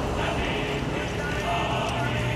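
Street background of indistinct voices, with horse hooves clopping.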